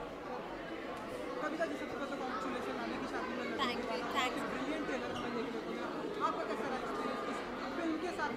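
Indistinct chatter of many people talking at once in a large hall, with a few brief higher voices standing out near the middle.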